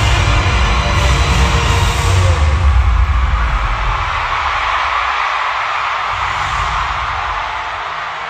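Loud live Afrobeats concert music heard through an arena PA on a phone recording, with heavy bass in the first half; about halfway through the bass drops out, leaving a thinner, noisy wash of sound.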